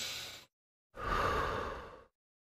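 Recorded breaths of a person: the end of an inhale about half a second in, then after a clean silence a sigh-like exhale lasting about a second.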